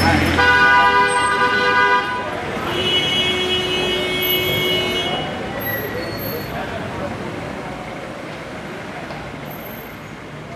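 Car horns honking in slow street traffic: one long honk lasting about two seconds, then a second, higher-pitched honk for about two seconds. The rumble of cars in the line fades after that.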